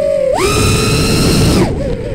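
A person's long, high-pitched whoop: the voice wavers, jumps up in pitch about half a second in, holds the high note for just over a second and then breaks off.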